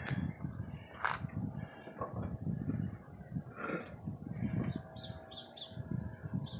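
Birds calling in the background: two short harsher calls about a second in and past the middle, then a few small high chirps near the end. Under them runs low, irregular rustling from the phone being handled and moved.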